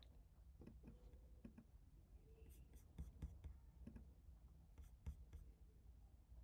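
Near silence: faint room tone with a few faint, short clicks.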